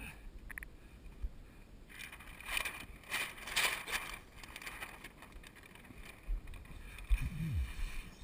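Paper target being pulled off a plywood target board and rustled, with a short run of crackling paper noise about two to four seconds in, over light wind on the microphone. A thump and a short low vocal sound come near the end.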